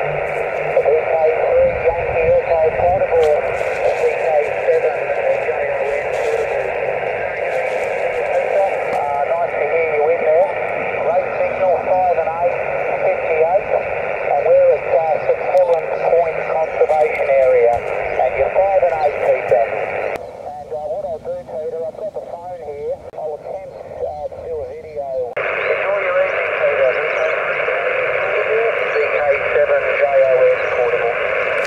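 Voice of a distant amateur station on the 7 MHz (40 m) band, received on single sideband and heard through a Yaesu portable transceiver's speaker: thin, narrow-band speech over band noise. For about five seconds in the latter half the higher part of the received audio drops away, then returns.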